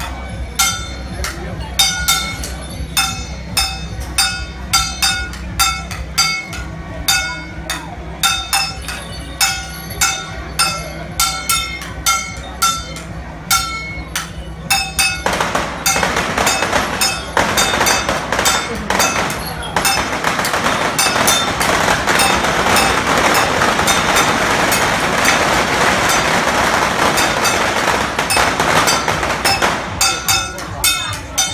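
Metal percussion struck in a steady beat, about two to three ringing hits a second, accompanying a folk procession troupe. From about fifteen seconds in, a loud, dense rushing noise joins the hits and continues to the end.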